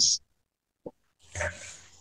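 The hissy 's' of the last spoken word trails off. A faint mouth click follows, then a short intake of breath by the reader about a second and a half in, before the next line.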